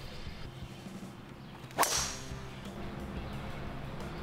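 A golf driver striking the ball off the tee: one sharp crack about two seconds in.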